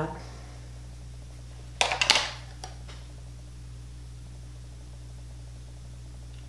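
A brief scratchy rub of a makeup sponge worked into a pressed-powder compact about two seconds in, a few quick strokes with a small click after. A steady low electrical hum runs underneath.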